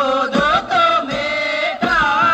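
Magar Kaura folk song: voices singing long, wavering held notes, with a couple of low beats under them.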